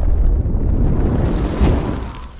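Fireball explosion sound effect: a loud, deep rumble of noise that swells again near the end and then begins to fade.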